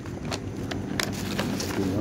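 Paper food wrapper and plastic bag being handled, giving a few short, sharp crinkles and clicks over a low background murmur.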